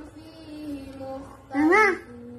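A small child's voice chanting in a drawn-out sing-song, the way Quran verses are recited, then one loud rising-and-falling cry near the end.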